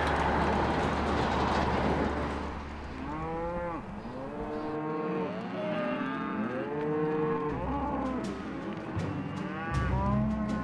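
A large truck with a livestock trailer passes with a steady rushing noise that fades out over the first two or three seconds. Then a herd of cattle moos, with many calls overlapping one another.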